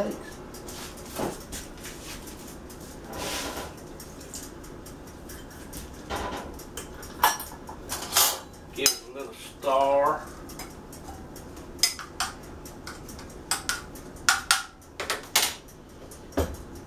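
Kitchenware being handled on a counter: bowls, cups and a spoon clink and knock in a run of short, sharp strikes, busiest in the second half.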